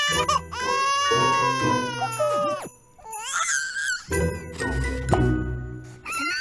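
Cartoon baby crying: a long, high wail, a short rising-and-falling cry about halfway through, then a second wail.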